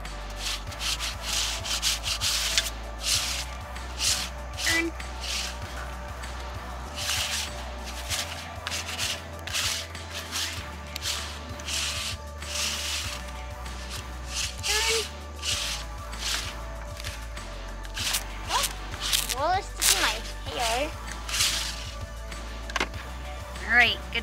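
Close, irregular rubbing and rustling of cloth, many short scratchy strokes, with a few brief high chirps in the last few seconds.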